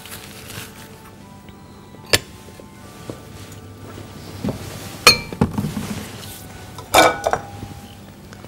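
Glass bowls and a metal strainer being handled on a counter: three sharp clinks, the later two with a short glassy ring, over quiet background music.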